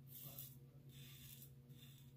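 Faint scraping of a Gillette Super Adjustable safety razor cutting through lathered stubble on the neck: two short strokes, over a steady low hum.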